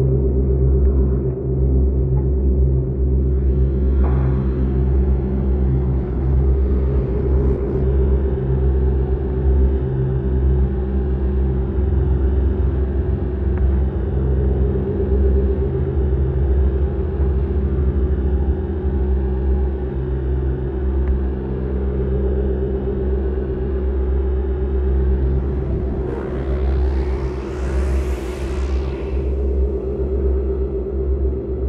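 Electronic ambient drone music: a loud, steady bass drone with sustained low tones, and a sweep that rises high and falls away again near the end.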